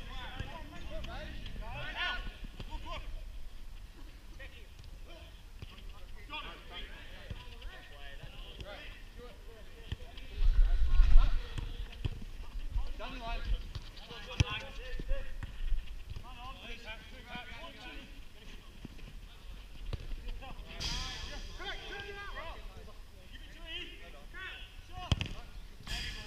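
Five-a-side football in play: players' distant calls and shouts, with occasional knocks of the ball being kicked. A loud low rumble comes about ten seconds in, and a sharp knock near the end.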